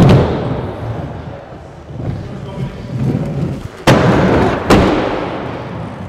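Aggressive inline skates on Kaltik flat frames hitting wooden skatepark ramps: a hard clack at the start, wheels rolling over the wood, then two more hard clacks about four and nearly five seconds in, each fading off.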